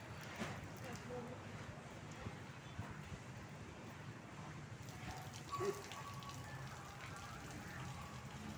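Faint, indistinct voices in the background over a steady crackling noise, with a brief knock a little before six seconds in.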